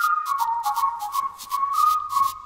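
Intro music of a children's hand-washing song: a whistled tune stepping up and down in pitch over a light, quick ticking beat.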